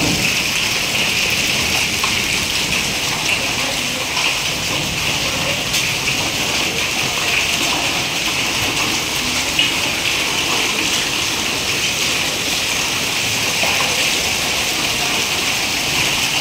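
Hailstorm: a steady downpour of hail and rain on the ground and surfaces, with scattered sharper ticks of stones striking.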